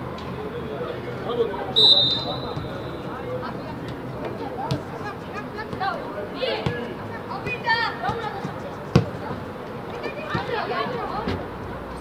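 A referee's whistle sounds once, a steady high note about two seconds in. Then come sharp thuds of a football being kicked, the loudest about nine seconds in, among short shouts from young players.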